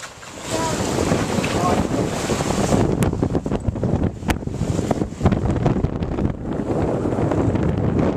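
Wind buffeting the microphone aboard a catamaran under way, over the rush of water past the hull. Two brief clicks come about three and four seconds in.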